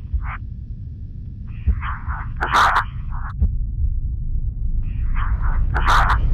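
Short, noisy breaths picked up by the microphone inside a pressure-suit helmet, in loose groups, over a steady low hum. There is one brief sharp crackle about two and a half seconds in.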